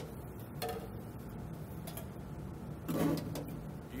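Low steady room hum with a few light clicks, and one short voice sound about three seconds in.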